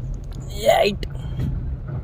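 Inside the cabin of a moving Suzuki car: steady low engine and road rumble. About half a second in, a short voice-like sound is louder than the rumble.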